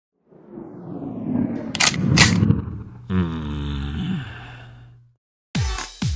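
Produced intro sound effects: a swelling noise with two sharp clicks, then a deep tone that falls in pitch and fades away. Another short burst of sound begins near the end.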